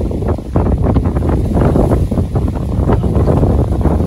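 Wind buffeting the phone's microphone: a loud, low rumble that keeps rising and falling in gusts.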